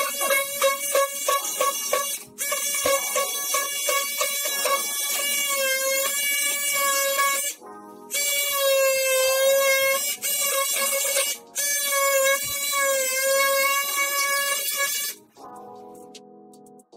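Cordless oscillating multi-tool cutting into a timber window sill: a loud, high, steady buzz that runs in several stretches of a few seconds with short breaks as the trigger is released, and stops shortly before the end.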